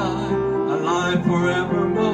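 A man singing a hymn into a microphone, accompanied by an upright piano and an electronic organ.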